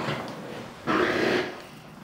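A patient shifting on a chiropractic treatment table as he sits up and turns, with a short breathy rush of noise about a second in.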